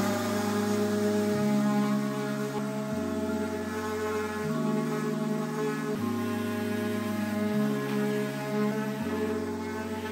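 Background music: sustained low bass notes and chords that change about every second and a half.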